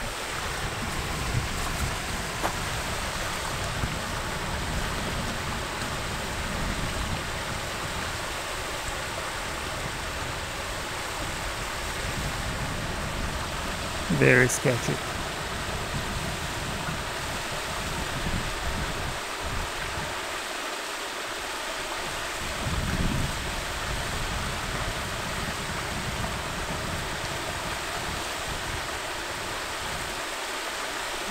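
Steady rush of water running through a beaver dam, with wind buffeting the microphone at times. A brief voice cuts in about halfway through.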